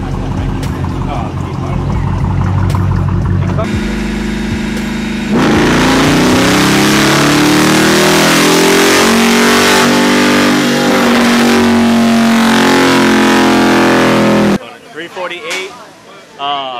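Dodge Challenger's 5.7-litre Hemi V8 with a Dynomax exhaust on a chassis dynamometer. It runs at a lower steady speed for about five seconds, then goes into a loud wide-open-throttle pull that rises in pitch for about nine seconds and cuts off suddenly near the end.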